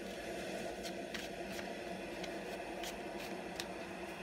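A tarot deck being shuffled by hand: soft rustling of the cards with a few light clicks, over a steady low room hum.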